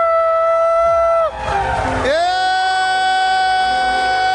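Live worship music in a large hall: a singer holds one long high note, breaks off just after a second in, then slides up into a second long held note about two seconds in.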